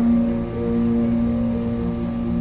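Theatre orchestra accompaniment holding a steady chord in a gap between sung phrases, over a low rumble from the old live recording.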